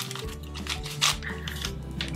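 Soft background music, with a few brief clicks and rustles as a small plastic toy doll is pulled from its foil wrapping.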